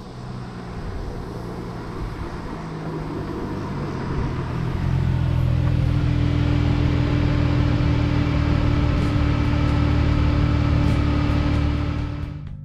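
2002 Chrysler Prowler's 3.5-litre V6 engine running, growing louder over the first few seconds and then holding a steady note from about five seconds in.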